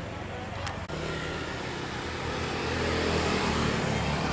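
A motor vehicle engine running with a steady low hum that grows louder in the second half.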